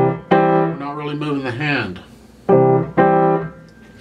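Acoustic grand piano: left-hand chords struck at the start and again about two and a half seconds in, each left to ring and fade away. They are a C major chord and its first inversion, played in the extended position that lets the hand stay put.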